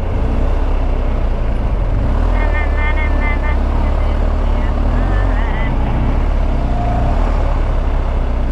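Motorcycle ridden slowly in second gear through dense city traffic: a steady low engine-and-wind rumble, with the surrounding traffic around it.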